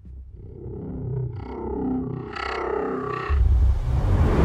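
Horror-trailer sound design: an eerie synthesized drone swells in loudness over a low rumble, then a deep low boom hits near the end.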